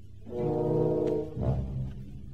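Symphony orchestra holding a sustained chord for about a second, then a short low note, after which the music falls away. A steady low hum from the old broadcast recording runs underneath.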